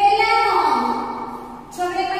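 A woman's voice in a drawn-out sing-song chant: one long note that slides down and is held, then a new note begins near the end.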